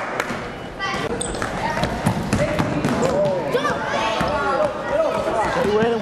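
A basketball bouncing on a hardwood gym floor during live play, with players' and spectators' voices throughout.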